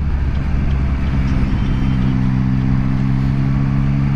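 Yamaha R6 inline-four engine running at road speed under a constant rush of wind and road noise; a steady engine note settles in about a second in and holds.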